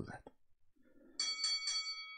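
Recorded bell alert played by a web workout rounds timer as its countdown hits zero and round one starts. The bell rings with quick repeated strikes, about six a second, starting about a second in.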